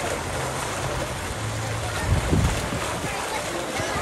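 Outdoor pool ambience: a steady rush of wind on the microphone and running water, with indistinct voices of people around. A few louder low bumps come about two seconds in.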